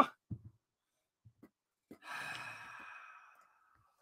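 A man's long, breathy sigh starting about two seconds in and fading away over about a second and a half: a sigh of dismay.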